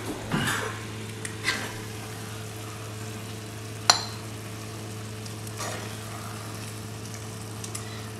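A metal spoon scoops saag paneer from a pan and serves it onto a ceramic plate: a few soft scrapes, and one sharp clink of metal on the plate about four seconds in. Under it runs a steady low hum, and the curry, still on the burner, sizzles faintly.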